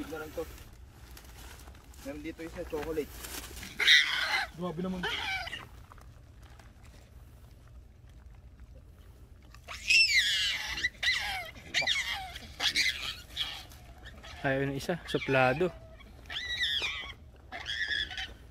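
Hamadryas baboons giving high cries that rise and fall in pitch, loudest about ten seconds in, between short bursts of people's voices.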